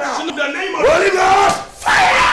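Loud men's voices shouting together in fervent prayer. About a second in, a long drawn-out cry rises and holds.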